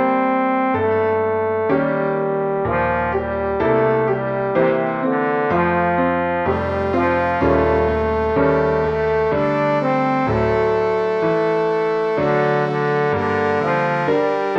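MIDI playback of the tenor part of a piece for mixed chorus and piano: the tenor line on a held, synthesized instrument voice over the piano accompaniment, notes changing about every second.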